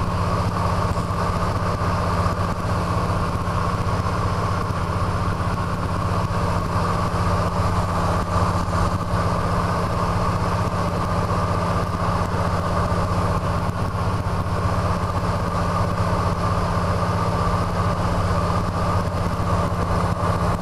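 DHC-2 Beaver's Pratt & Whitney R-985 nine-cylinder radial engine and propeller running steadily at cruise, heard from inside the cockpit.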